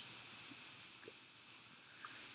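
Near silence: faint room hiss with a couple of tiny, faint ticks.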